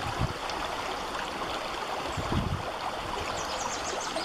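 Shallow stream running over rocks, a steady rush and gurgle of water.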